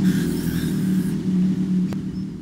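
A steady low hum made of several held pitches, strongest at the bottom, with no words over it.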